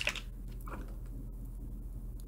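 A steady low electrical hum, with a few faint small clicks from hands handling a small tube of lash glue.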